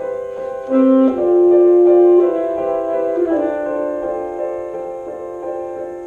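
Saxophone and grand piano playing contemporary classical chamber music, with long held notes. A louder note comes in just under a second in, and the music then gradually eases.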